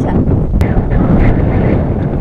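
Wind buffeting the camera microphone: a loud, continuous low rumble, with a single sharp click about half a second in.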